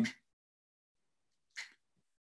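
A man's drawn-out "um" trailing off, then near silence broken by one short, quiet breath noise about one and a half seconds in.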